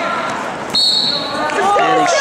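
Referee's whistle, one short sharp blast about halfway through, stopping the action as the wrestlers go out of bounds.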